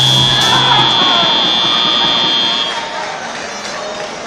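End-of-match buzzer at a robotics competition: one steady high-pitched tone lasting about three seconds, signalling that the match has ended, over the background noise of the crowd in the hall.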